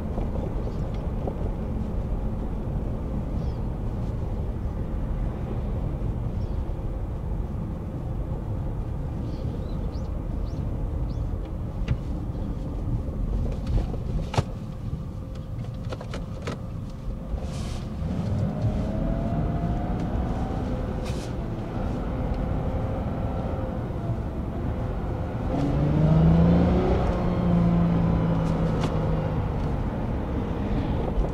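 Toyota Crown driving, heard from inside the cabin: a steady low road and engine rumble with a few faint clicks. An engine drone rises and grows louder in the last few seconds.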